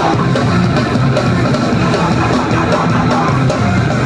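A live rock band playing loud: electric guitar, bass guitar and drum kit, with steady drum and cymbal hits.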